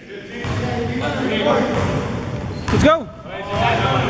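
Basketball bouncing on a hard gym floor under indistinct chatter from the players, with one louder call about three seconds in.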